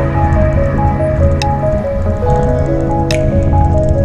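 Background music: a melody of held notes over a steady bass line, with a sharp percussive hit twice, roughly every second and three quarters.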